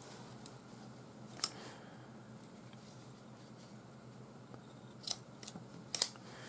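Scissors snipping through paracord close to the knot: a few short, sharp clicks, one about a second and a half in and three close together near the end.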